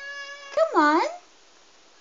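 A high-pitched voice holding a drawn-out note that fades, then a swooping call that dips and rises about half a second in, followed by faint room noise.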